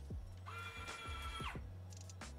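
Stream background music plays throughout. About half a second in, the Nimble nail-painting robot's motor gives a steady whine for about a second, ramping up and back down at either end.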